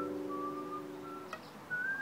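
A nylon-string classical guitar chord rings out and fades while a few held whistled notes carry a melody over it.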